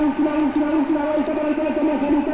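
A race announcer's man's voice over a public-address loudspeaker, talking rapidly and unbroken at a raised, high pitch.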